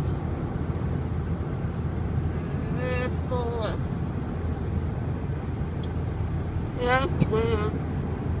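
Steady low rumble of road and engine noise inside a moving car's cabin, twice briefly joined by a voice, at about three seconds and again near seven seconds.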